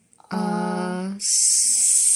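A voice slowly sounding out the word 'thrust' phonics-style: one held, steady-pitched voiced sound for about a second, then a long hissed 's'.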